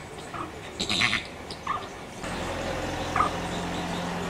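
Flamingos calling in short nasal honks, with one brief higher burst of calls about a second in. About halfway through a steady low hum comes in under the calls.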